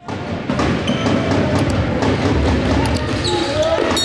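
Live sound of a basketball game in an indoor sports hall: a series of sharp knocks from the ball and feet on the wooden court, under shouting players and spectators.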